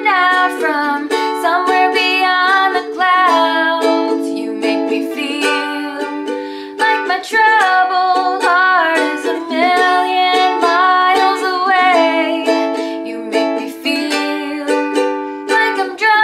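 A woman singing a slow pop ballad, accompanying herself on a strummed ukulele, with a steady, even strum under sustained sung notes.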